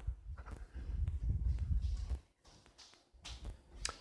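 Footsteps on a hardwood floor, heard as low thuds with a few light clicks, as someone walks through the house with the camera. The steps are heaviest in the first couple of seconds, then quieten.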